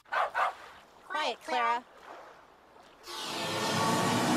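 A dog barking: two short barks at the start, then two longer barks with a bending pitch about a second in. Music comes in about three seconds in.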